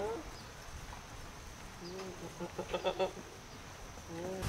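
Young goats bleating: a short call about halfway through, then a longer, quavering bleat just before three seconds.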